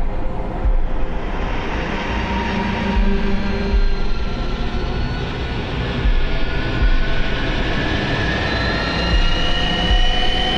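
Dramatic trailer soundtrack: sustained music notes over a dense, continuous rumble with irregular deep thuds, and high tones slowly rising near the end.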